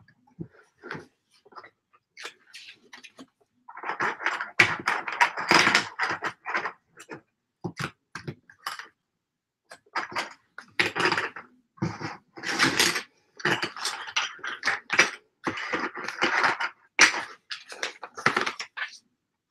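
LEGO bricks clattering and clicking as hands handle and rummage through the small plastic pieces on a table, in irregular bursts of rattling and rustling.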